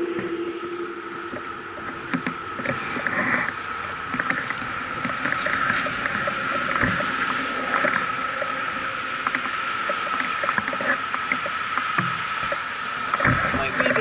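Road traffic idling and creeping at an intersection: steady traffic noise with a constant high-pitched whine and scattered light clicks.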